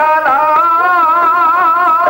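Dhadi folk music: a bowed sarangi and men's singing voices hold one long note with an even, wavering vibrato, with light hand-drum strokes underneath.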